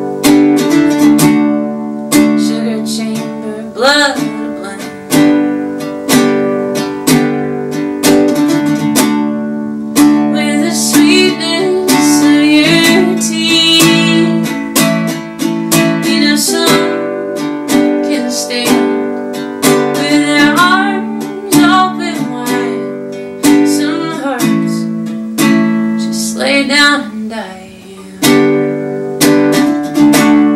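Ukulele strummed in a steady rhythm with a woman singing over it in rising and falling phrases; the strumming dips briefly near the end.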